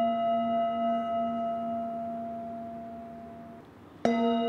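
Tibetan singing bowl ringing after a mallet strike, several steady tones fading slowly with a gentle wavering pulse in loudness until they die away near the end. It is struck again with a padded mallet right at the close.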